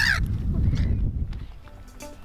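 Gulls calling as the flock wheels overhead: one loud harsh squawk right at the start, over a low rumbling noise that fades away over the next second and a half.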